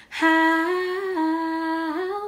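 A woman singing unaccompanied, holding one long note that steps up slightly about a second in, drops back, and slides upward near the end.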